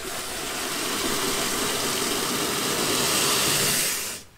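Water rushing from a garden tap through a pressure-test fitting and splashing into a plastic bucket, a steady hissing splash that grows a little louder over the first second as the tap is opened slowly. It stops suddenly at the end as the outlet valve is shut, so the gauge can read static pressure.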